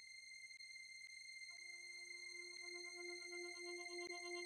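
Quiet synthesizer intro fading in: a steady high electronic tone with faint ticks about twice a second. About one and a half seconds in, a lower synth note joins, pulsing about twice a second, and the whole sound grows gradually louder.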